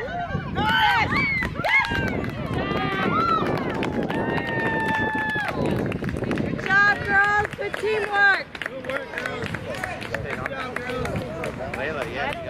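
Spectators shouting and cheering in high, excited voices, with one long held cheer about four seconds in and another burst of calls near the eight-second mark.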